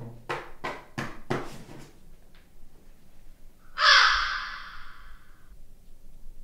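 A crow cawing: a quick run of short, sharp strokes in the first two seconds, then one loud, drawn-out caw with a fading, echoing tail about four seconds in. This is the crow's caw that heralds the summoned Draugr's arrival.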